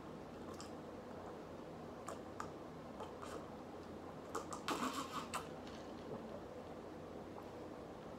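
A man drinking a michelada from a tall glass: faint swallowing sounds and small clicks, with a louder cluster of them about four and a half to five and a half seconds in.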